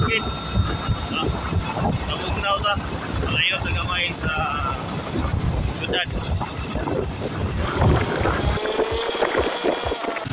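Low rumbling wind noise on a phone microphone, with a voice and background music mixed in.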